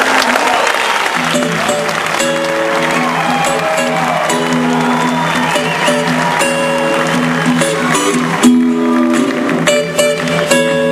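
Acoustic guitars playing sustained chords live, with an audience applauding over the music.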